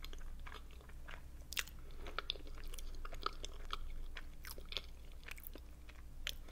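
Close-miked chewing of a mouthful of boiled dumplings: soft, wet mouth clicks and smacks coming at an irregular pace.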